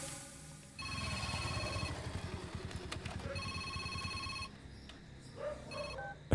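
Mobile phone ringing: two bursts of a rapid trilling electronic ring, each about a second long, about a second and a half apart.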